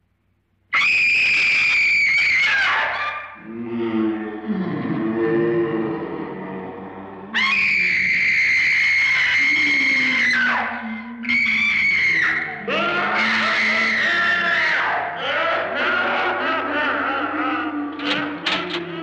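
Three long, high-pitched screams by a woman, the first starting about a second in, with low, wavering, ghostly moans sliding in pitch between and after them. They are film horror sound effects.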